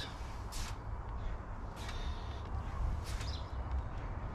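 Wind rumbling on the microphone, with three short rasping sounds about a second and a quarter apart.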